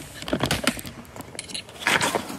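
Handling noise as the camera is grabbed and moved: a run of clicks and rustles in the first second, then a louder burst of rustling near the end.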